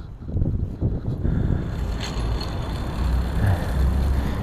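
Wind buffeting the microphone outdoors, an uneven low rumble, with a steadier hiss joining it about a second in.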